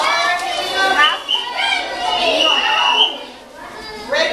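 Overlapping children's voices, excited chatter, calls and laughter from a group of middle-school students, with a brief high-pitched note a little past halfway.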